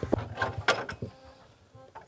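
A few light knocks and handling sounds from wood and objects on a log wall in the first second, then quieter, under a faint steady buzz like an insect.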